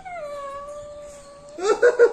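A pet lory gives one long, howl-like wailing call that slides up in pitch and then holds level for about a second and a half. Near the end, a quick run of short, laugh-like notes starts.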